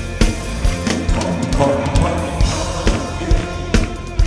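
Live church worship band playing a Korean gospel song, with a drum kit keeping a steady beat about twice a second under bass and sustained instrument notes. This is an instrumental stretch between sung lines.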